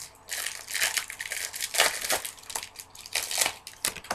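Baseball card pack wrapper crinkling and tearing as it is opened by hand: an irregular run of crackly rustles that stops just before the end.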